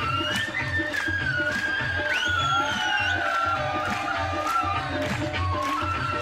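Punjabi folk music: a steady drum beat about twice a second under a high, sustained melody that bends and slides in pitch.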